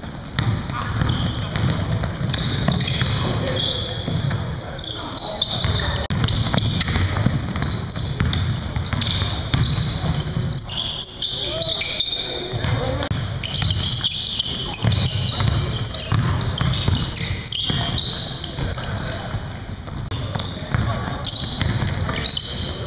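Basketball game in a gym: the ball bouncing on a hardwood court, with players' voices calling out across the game.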